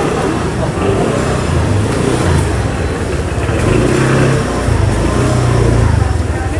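A small motor scooter's engine running as it rides slowly past through a busy market aisle, growing louder toward the end, over the chatter of people around.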